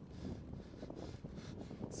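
Wind on the microphone and a low, even rumble from a bicycle being ridden along a road. A man's voice starts right at the end.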